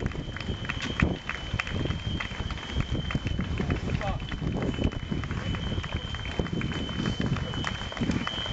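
Footsteps of a passing pack of marathon runners slapping on an asphalt street, many quick, overlapping steps with no break. A steady high-pitched tone runs underneath.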